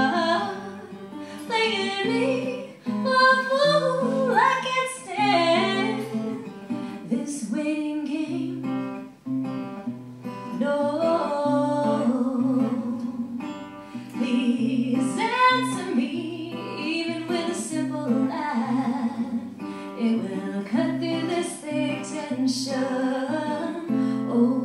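A woman singing a folk song to her own strummed acoustic guitar.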